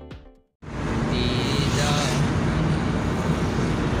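Background music ends, then after a brief gap the steady engine and road noise of a moving car, heard from inside the cabin, takes over.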